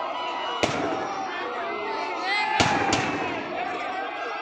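Firecrackers packed inside a burning effigy going off: three sharp bangs, one about half a second in and two close together near the end, over the chatter and shouts of a large crowd.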